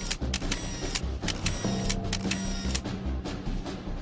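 Camera shutters clicking in quick, irregular succession, about a dozen clicks, over sustained low background music.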